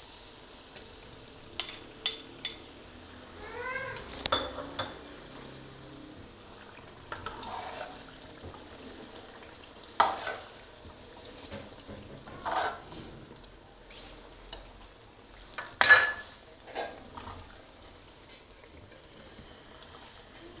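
A metal ladle stirs chicken and yogurt in a steel karahi, scraping and clinking against the pan over a light sizzle. A few short rising squeaks come about four seconds in. The loudest sound is a sharp clang of metal on the pan about sixteen seconds in.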